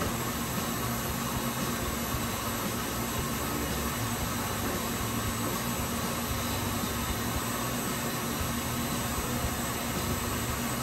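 Electric stand mixer running steadily at high speed, its flat beater paddle mashing boiled potatoes in a steel bowl: an even motor whir with a low hum.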